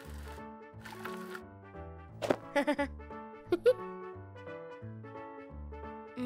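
Cartoon background music with a bouncy stepping bass line. Over it, two hissing swooshes play in the first second and a half as a toy-like truck skids, then a crash about two seconds in followed by a character's short cry, and another knock with a brief cry about a second later.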